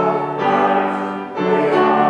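A small choir singing held notes with keyboard accompaniment, moving to a new note every half second to a second, with a brief drop in loudness about two-thirds of the way through before the next phrase.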